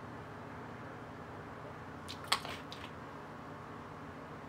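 Vinegar poured from a bottle onto avocado halves on a plate: quiet, with one short wet splash a little over two seconds in and a few faint ticks after it, over low room hum.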